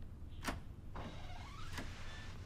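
A wooden door being opened: the latch clicks twice, the door hinge creaks with a rising squeak, and a last click comes near the end.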